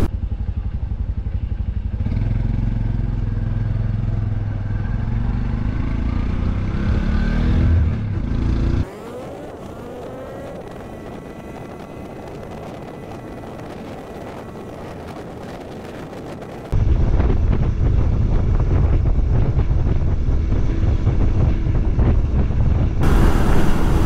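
Onboard sound of a motorcycle on the road: engine running with wind noise, rising in pitch as it accelerates about six to eight seconds in. It cuts to a much quieter stretch where a rising whine settles into a steady tone. About seventeen seconds in, the louder engine and wind sound returns.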